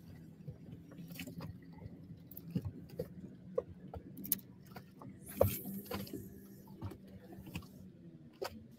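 Faint clicks and rattles of a fishing rod and reel being handled while reeling in and making a cast, with a brief rushing noise about five and a half seconds in, over a low steady hum.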